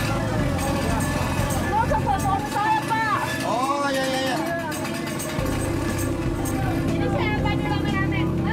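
Busy street ambience: several people talking at once over steady traffic noise from vehicles.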